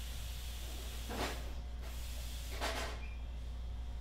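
Paper pattern strips rustling and sliding on paper in two short bursts as they are shifted by hand, over a steady low hum.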